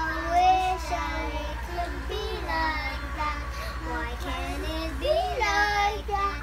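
Two young girls singing together, their voices gliding up and down in short phrases.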